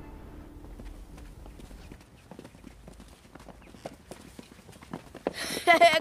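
Bowed-string music fades out, then faint, irregular footsteps and scuffs. A voice calls "Hey" near the end.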